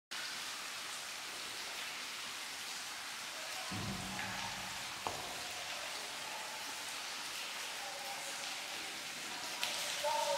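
Steady patter and rush of water dripping and falling inside a limestone cave. There is a brief low hum about four seconds in and a sharp click about a second later.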